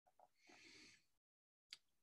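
Near silence, with a faint breath in the first second.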